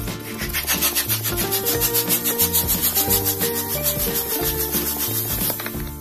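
A balloon pump blowing air into a latex balloon as it inflates: a fast, pulsing rush of air that stops about half a second before the end. Light background music plays throughout.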